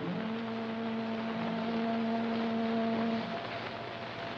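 A single long horn blast over a steady hiss, held at one pitch for about three seconds and then stopping.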